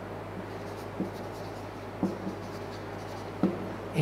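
Marker pen writing on a whiteboard: a few short strokes about a second apart, over a steady low hum.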